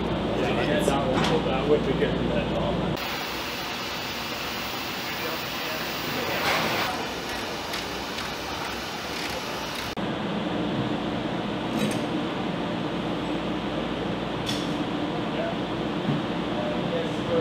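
Working ambience of crew handling a metal missile launcher carrier: a steady background hum and hiss, a few sharp metallic clinks and knocks, and indistinct voices in the first few seconds.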